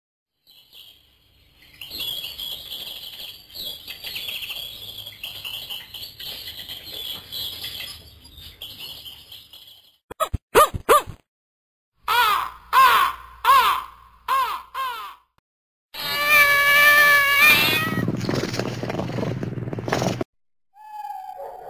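A string of animal and bird sound effects. High chirping runs from about two seconds in to halfway, then come a few short calls, a run of about five short caws, and near the end one longer wavering call followed by a rougher noise.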